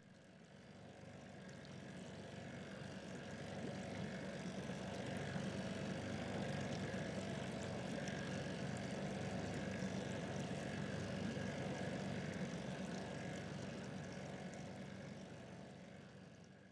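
A faint, distant engine drone that fades in over the first few seconds, holds steady with a low hum, and fades away near the end.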